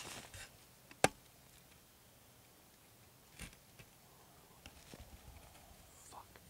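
Handling noise from a hand-held camera: faint scattered rustles, with one sharp click about a second in that is the loudest sound, and a short rustle a little past the middle.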